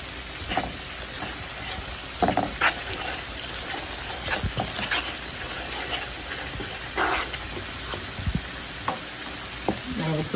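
Wooden spoon stirring bell peppers, garlic and scallions sautéing in a sizzling pan: a steady sizzle with irregular scraping strokes of the spoon against the pan.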